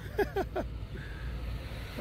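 Low steady rumble of street traffic, with a short trailing laugh right at the start.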